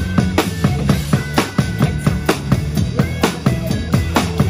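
Acoustic drum kit played live over a pop backing track: kick, snare and cymbal strikes in a steady beat, with the track's bass and synth notes underneath.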